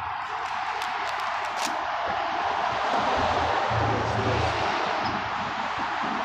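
City street noise: a steady, wordless hiss that swells to its loudest about halfway through and then eases off, with a few faint clicks in the first two seconds and a low hum near the middle.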